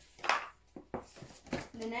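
Toy boxes being handled as one is put down and the next picked up: a short rustle, then a few light knocks, before a woman's voice starts again near the end.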